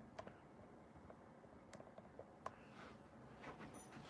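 Near silence: quiet room tone with a few faint, scattered clicks.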